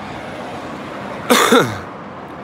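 A man coughs once, about a second and a half in, over steady road traffic noise.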